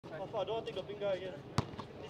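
A basketball bouncing once on an outdoor hard court, a single sharp thud about one and a half seconds in, with men talking.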